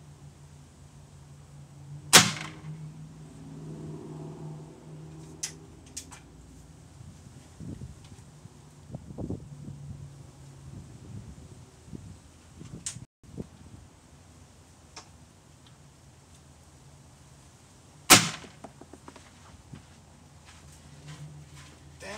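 Two shots from an air gun firing pointed pellets, each a sharp crack, about sixteen seconds apart. A few faint clicks come between them.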